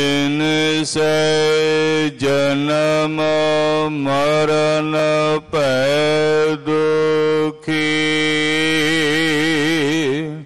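A man's voice chanting a line of Gurbani in long, drawn-out held notes, broken by about six short pauses. The last note is held for a couple of seconds with a wavering vibrato.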